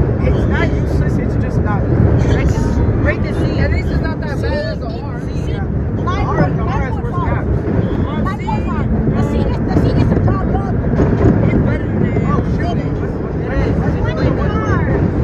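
An R1 subway car built in 1932 runs through a tunnel with a loud, steady low rumble of wheels on rail and traction motors. Voices chatter and call out over it throughout.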